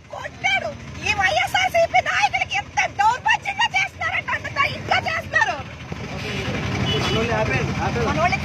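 Women's voices talking inside a vehicle, over the rumble of its engine and road noise. The rumble grows in the last few seconds as the talking thins out.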